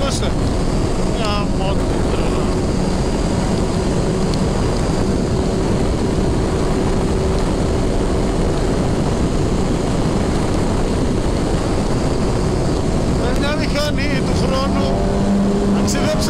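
Suzuki Hayabusa inline-four engine running steadily at speed in sixth gear, its note echoing off the tunnel walls, with wind rush around the bike.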